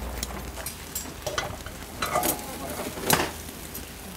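Pork belly sizzling on a grill grate over flaring flames, with metal tongs clicking and scraping against the grate and meat several times.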